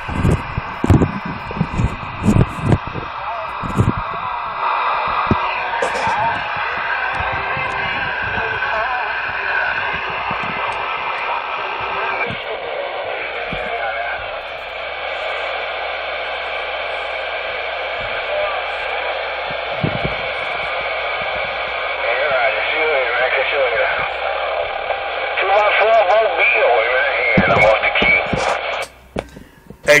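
Ranger 2950 radio on CB channel 19 (27.185 MHz) receiving, its speaker giving out narrow, tinny radio audio with hiss and indistinct voices from other stations. The audio cuts off near the end.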